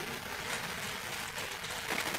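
Pages of a Bible being leafed through: a soft, papery rustle over faint room noise.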